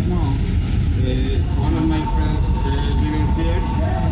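Train-station ambience on a moving escalator: a steady low rumble under other people's voices, with a thin steady tone coming in about a second and a half in.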